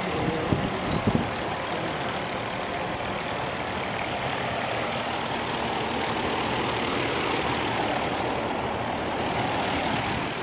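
Lennox outdoor air-conditioning condenser unit running, a steady fan and compressor noise, with a few knocks about a second in.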